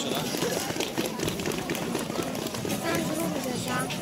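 Indistinct voices chattering quietly, with scattered clicks and rustling throughout.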